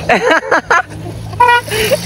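A small van driving slowly past close by, its engine running with a steady low hum, with a brief steady tone about a second and a half in.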